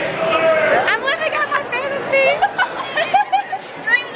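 Several girls' voices chattering over one another in lively, high-pitched talk.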